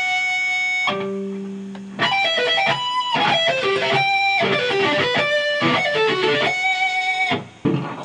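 Electric guitar playing sweep-picked arpeggios. A note rings out and fades over about two seconds, then fast runs of arpeggio notes start again and stop shortly before the end.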